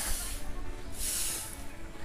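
A high hiss that swells and fades twice, about a second apart, over a low rumble.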